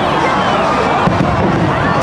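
Fireworks going off, with a few sharp bangs about halfway through, over a dense crowd of many voices shouting and cheering.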